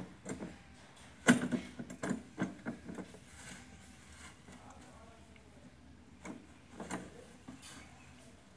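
Plastic tub knocking and scraping as an elephant calf rummages in it with its trunk. A cluster of sharp knocks starts about a second in, the first one the loudest, and a few more come near the end.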